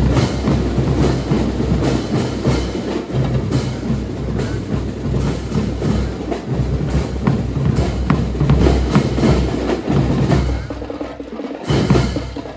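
Drum and lyre corps playing a rhythmic marching beat, led by snare and bass drums. The drumming thins out to a lull about a second before the end, broken by a single hit.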